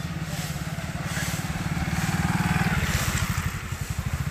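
A road vehicle's engine running with a rapid, even low pulse, growing louder over the first two and a half seconds and then easing off.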